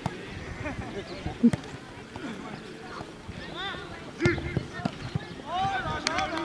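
Football kicked hard on a grass pitch: a sharp thud about a second and a half in. Players' shouts and calls follow across the field in the second half.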